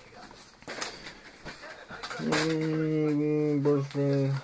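Trading cards rustling and clicking softly as a stack is thumbed through by hand. About two seconds in, a man gives a long, level hummed "mmm" while looking through them, held for nearly two seconds.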